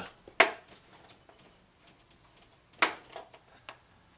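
Two sharp knocks a couple of seconds apart, with a few lighter taps after the second, as containers of two-part urethane foam are handled and set down on a wooden workbench.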